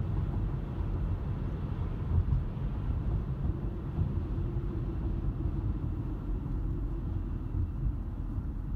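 A moving car heard from inside its cabin: a steady low rumble of road and engine noise. A faint steady hum joins in about halfway through.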